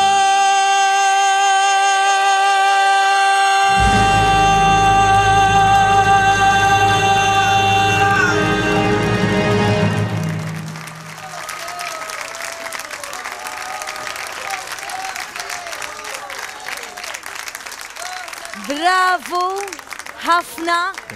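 A male singer holds a long, sustained final high note over orchestral backing music, which ends about ten seconds in. A studio audience then applauds and cheers, with a voice starting to speak near the end.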